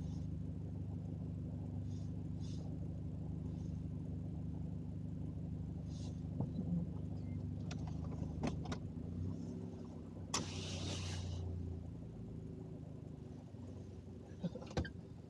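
Car engine running steadily, a low hum heard from inside the cabin, with a few light clicks and a short hiss about ten seconds in; the hum drops off near the end.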